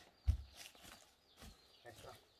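Footsteps on concrete: a few soft, low thumps about a second apart, the first one the loudest.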